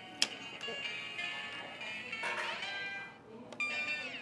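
Circuit-bent electronic toy playing electronic tones through its small speaker, the pitch gliding up and down as the wired-in knob is turned to change its speed. A sharp click comes just after the start, and the sound briefly drops out about three seconds in.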